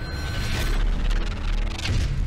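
Logo-intro sound design: two whooshing sweeps, about half a second in and again near the end, over a steady low bass drone.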